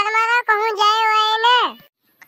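A high, childlike voice drawing out one long sung note of about a second and a half, with a slight waver, that falls away near the end.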